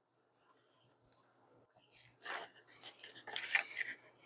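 Paper document sleeve rustling and scraping against a cardboard box tray as hands lift it out, in several short bursts starting about halfway through, after a nearly silent first half.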